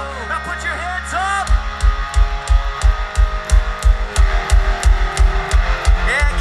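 Pop-punk band playing live, with electric guitar and bass holding a chord. About a second and a half in, the drums come in with a steady kick-drum and hi-hat beat under the guitars.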